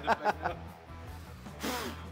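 A man's voice in a few quick, evenly spaced vocal bursts, then a sharp breath near the end, over background music with a steady low bass line.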